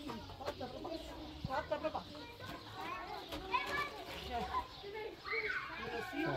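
Several people talking and calling out in the background, some of the voices high-pitched, with a few sharp knocks in between.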